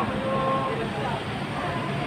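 A vehicle engine idling steadily under the chatter of people talking nearby.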